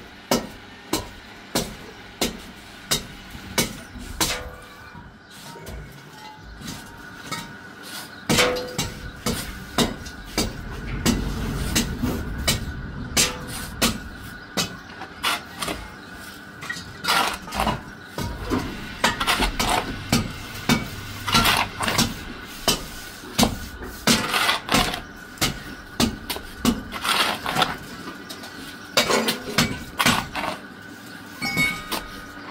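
Repeated sharp knocks or strikes at a steady pace, about one and a half a second, kept up throughout.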